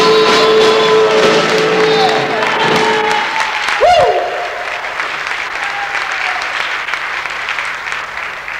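A rock and roll song ends on a held final chord about three seconds in, with a short swooping note just after. The audience then applauds.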